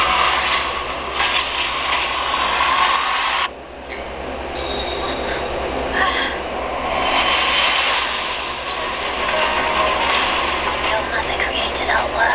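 A film trailer's soundtrack played back through speakers: dialogue and dense sound effects. It cuts off abruptly about three and a half seconds in, then builds back up.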